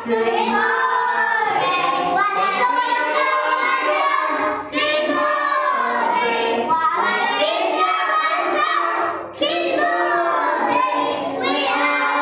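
Children singing an action song over backing music, in sung phrases with short breaks about five and nine seconds in.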